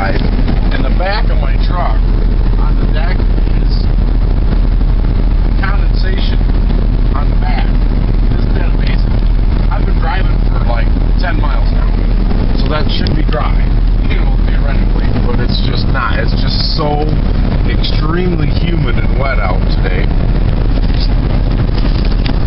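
Steady engine and road noise heard inside a car's cabin while driving, with a strong low rumble throughout.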